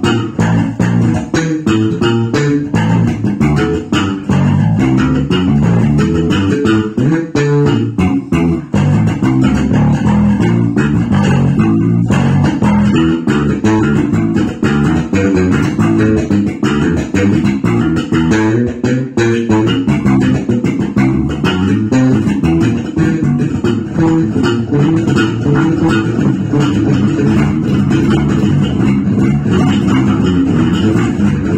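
Electric bass guitar played fingerstyle: a steady jazz-funk groove of quick plucked notes.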